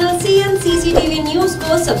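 News-channel jingle music with a sung melody of held notes stepping in pitch.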